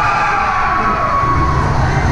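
Spectators in an ice rink cheering a goal, several voices overlapping in a long falling cheer.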